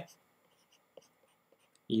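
Faint stylus taps on a tablet while handwriting, a few light ticks about a second in, over quiet room tone.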